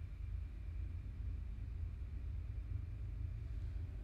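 Quiet room tone: a steady low hum with no distinct sounds.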